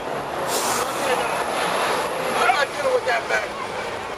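Street traffic noise as a large vehicle passes, with a short hiss about half a second in. Voices are heard under it.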